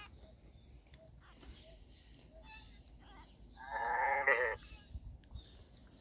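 A sheep bleats once, a wavering call of about a second starting nearly four seconds in. A few faint clicks are heard around it.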